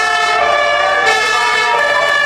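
A siren sounding as one loud, steady tone with many overtones, its pitch shifting slightly about a second in.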